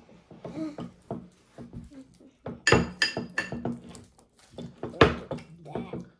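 Spoon knocking and scraping against a bowl while slime is mixed: scattered knocks, a run of ringing clinks about three seconds in, and a loud knock about five seconds in.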